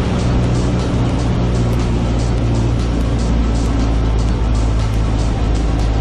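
Cabin sound of a light single-engine aircraft's piston engine and propeller, a steady low drone at reduced approach power on short final, with background music and a light quick beat laid over it.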